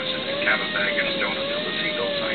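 Airliner cabin noise while taxiing after landing: a steady, slightly wavering whine under the hum of the cabin, with indistinct speech over it, most likely the cabin address system.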